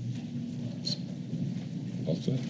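Room noise between speakers in a meeting room: a low steady rumble with faint rustling and one small click about a second in.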